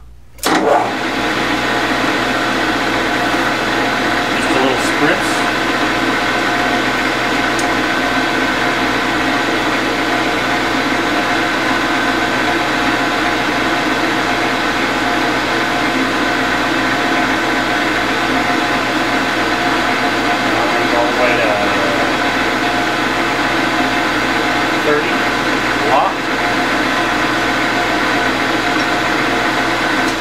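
Metal lathe starting up about half a second in and then running at a steady speed, with a steady whine made of several constant tones.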